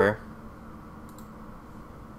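A couple of faint computer mouse clicks about a second in, over low room noise, as a dialog button is clicked.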